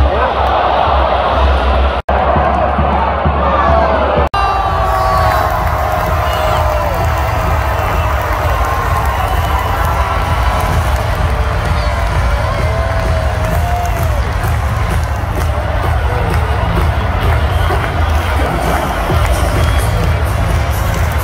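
Large stadium crowd of football fans cheering and clapping, with drawn-out shouts gliding up and down above the din. The sound drops out for an instant twice in the first few seconds.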